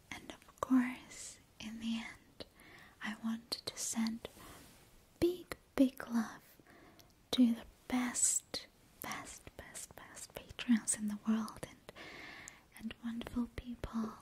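A woman whispering close to a microphone, her soft breathy syllables broken by brief half-voiced sounds and small sharp clicks.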